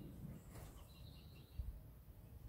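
Faint birdsong: a few short, high chirps about a second in, over a steady low background rumble.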